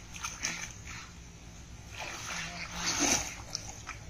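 Shallow pond water splashing and sloshing as a cast net is hauled in by its rope, in a few separate splashes, the loudest about three seconds in.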